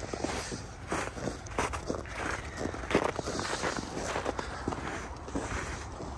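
Footsteps of a person walking on snow-covered ground, a steady series of soft strikes at walking pace.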